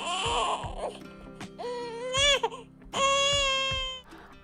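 Infant crying in three wails, the last one long and steady, over soft background music.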